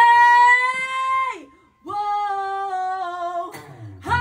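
A woman singing unaccompanied: two long held notes, the second a little lower than the first and sagging slightly, as the a cappella opening of an acoustic rock song.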